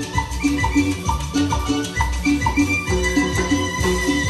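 Live Latin dance band music, instrumental at this point: a steady repeating beat with bass, hand percussion and a recurring melody line.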